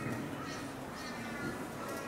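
Felt-tip marker writing on a whiteboard, with faint squeaky strokes that come and go.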